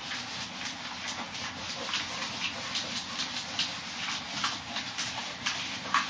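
Whiteboard eraser wiping marker off a whiteboard in repeated back-and-forth strokes, a rubbing swish about two or three times a second.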